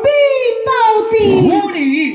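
A woman singing a Taiwanese opera (gezaixi) aria through a microphone and PA, in a high voice holding long sliding notes that drop in pitch near the end.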